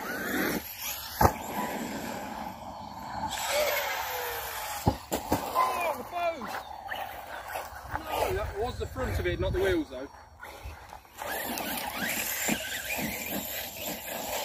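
Distant, unintelligible voices of people talking and calling out, with a few sharp clicks and a stretch of low wind rumble on the microphone.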